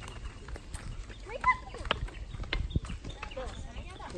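Wooden walking sticks tapping and footsteps on a paved path: a string of irregular clicks and knocks.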